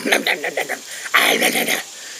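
A man's mock monster growling and snarling, ending in a loud, harsh snarl about a second in that lasts over half a second.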